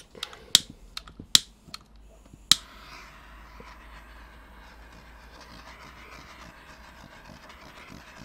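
Handheld butane torch being lit: a few sharp ignition clicks over the first two and a half seconds, then the faint, steady hiss of the flame as it is played over wet acrylic paint to pop surface bubbles.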